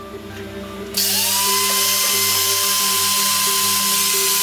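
Angle grinder switched on about a second in, its motor whine rising in pitch as the disc spins up, then running steadily at full speed.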